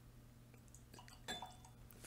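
Near silence, with a faint handling noise and one light clink of glass a little after halfway through, briefly ringing.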